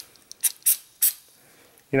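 Short spurts of Break-Free CLP from an aerosol can sprayed into a pistol slide: three quick hisses within about the first second.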